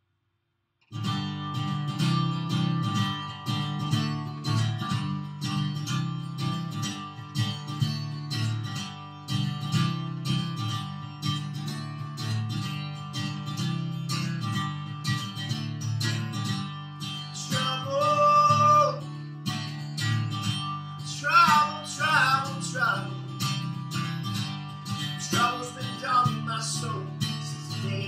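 Acoustic guitar strummed in a steady rhythm, starting about a second in. A man's singing voice comes in over it a little past halfway.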